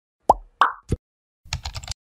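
Three short, pitched pop sound effects in quick succession, then about half a second of rapid keyboard-typing clicks, as text is typed into an animated search bar.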